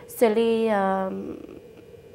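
A woman speaking: a single syllable drawn out at a steady pitch for about a second, then trailing off quieter.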